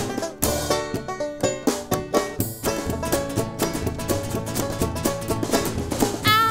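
Acoustic band playing an instrumental passage: banjo picking to the fore over Spanish guitar, upright double bass and drum kit, with no voice.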